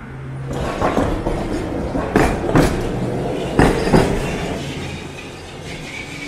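A city tram passing along street tracks, its wheels clacking over the rail joints in a few pairs of sharp knocks over a running rumble. The sound fades away after about four seconds.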